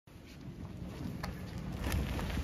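Low rumble of a late model stock car's Hoosier racing tyres rolling slowly over gritty asphalt, growing louder as the car comes closer. A sharp click sounds a little after a second in, and another near the end.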